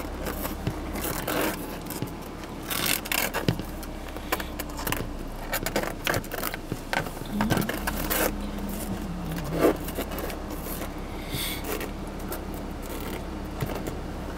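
Sulcata tortoises' claws and shells scraping and clicking irregularly on a car's plastic dashboard as they walk, over a steady low hum.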